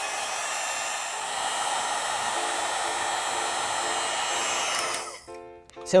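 Electric heat gun running steadily, blowing with a faint whine, as it shrinks heat-shrink tubing over a crimped battery cable lug; it cuts off about five seconds in.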